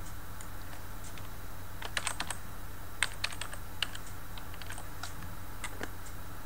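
Computer keyboard typing: quick key clicks in two short runs, about two and three seconds in, with a few scattered clicks after, over a steady low hum.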